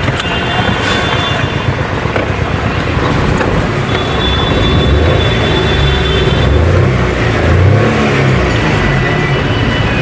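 Car engine idling, heard from inside the stationary car's cabin, with steady street traffic noise around it.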